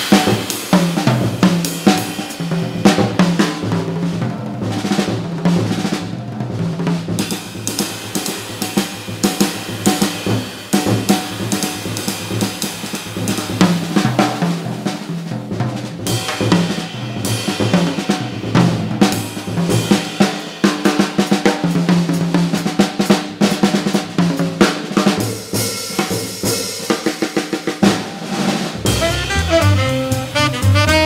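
Jazz drum kit solo: snare, bass drum and cymbals struck in busy, uneven figures. About a second before the end, the two saxophones come back in together.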